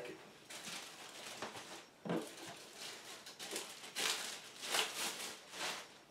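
Packaging being handled: a series of rustles and scrapes of a cardboard product box and crinkling plastic wrap, loudest from about four seconds in to near the end.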